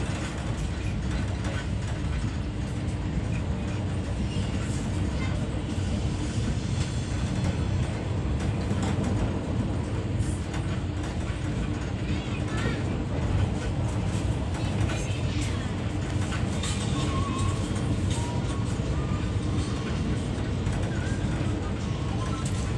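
Steady running noise of a passenger train heard from inside the coach: a continuous low rumble of wheels on the track with body rattle and a few faint squeals.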